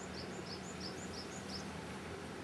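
A bird's quick run of short, high chirps, about four a second for a second and a half, over a steady wash of stream noise.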